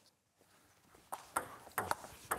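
Table tennis ball being served and hit back, giving a few sharp clicks off the rubber paddles and the table top from about a second in.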